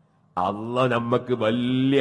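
A man's voice intoning in a held, melodic chant-like line, starting about a third of a second in after a brief pause: a preacher's sung recitation of Arabic.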